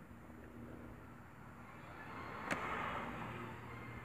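Faint outdoor background noise with a single sharp click about two and a half seconds in, and a brief swell of noise around it that fades within about a second.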